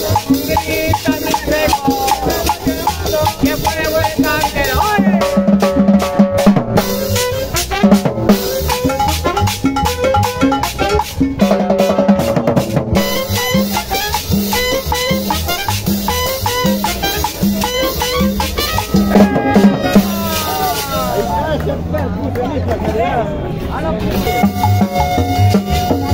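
A live street band playing cumbia with a steady dance beat: a drum kit with cymbal, a pair of congas, a metal cylinder shaker, and saxophone and trumpet playing the melody.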